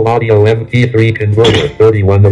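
A fast synthetic text-to-speech voice, the JAWS screen reader, reading out what is typed, with a sharp click about one and a half seconds in.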